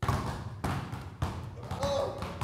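Basketballs being dribbled on a hard indoor floor: a run of sharp bounces, about two a second.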